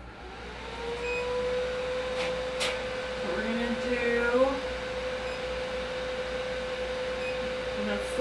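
Ultrasound cavitation body-contouring machine switched on, its handpiece giving a steady mid-pitched tone that starts about half a second in and holds unchanged. Two light clicks come near the middle.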